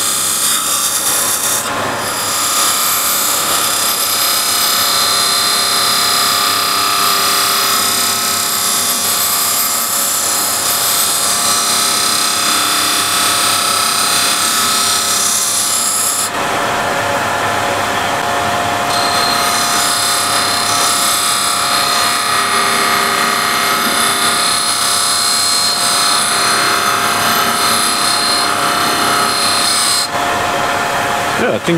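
Wood lathe running while a turning tool cuts beads into a spinning hardwood block, a steady loud hiss of the cut over the lathe's steady whine. About sixteen seconds in the cutting sound changes and then carries on.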